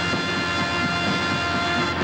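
Live soul-rock band holding one long, steady chord, with trumpet and saxophone sustaining it over the rhythm section.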